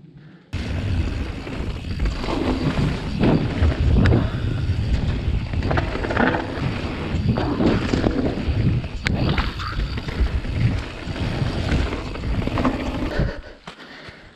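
Mountain bike descending a rough dirt trail, recorded by a GoPro on the bike: a steady rush of tyre noise and wind on the microphone, with frequent knocks and rattles as the bike goes over bumps and rocks. It starts about half a second in and stops shortly before the end, as the bike comes to a halt.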